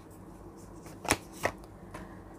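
Tarot card drawn from the deck and laid on the spread: two short card snaps about a second in, a third of a second apart.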